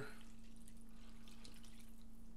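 Faint dripping and splashing of yeasty water poured from a glass measuring cup into flour in a stainless steel mixing bowl.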